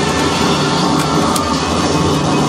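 Live experimental noise music: a loud, dense, steady wall of layered tape and electronic noise played through a mixer and PA speakers, with a low hum underneath.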